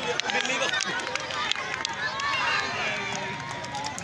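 Crowd of spectators shouting and talking at once, many voices overlapping into a steady din.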